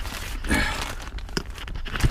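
Rustling and handling noises inside a pickup's cab, with one sharp click about one and a half seconds in.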